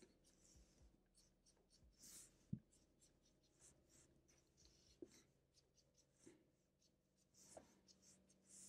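Faint scratching of a felt-tip marker drawing many short, quick strokes on paper, with a soft knock about two and a half seconds in.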